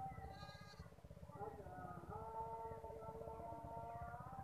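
Background music: a held, wavering melody in several layers over a steady low pulse.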